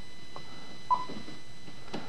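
A single short key beep from the Icom IC-9700 transceiver about a second in, as its touchscreen menu is pressed.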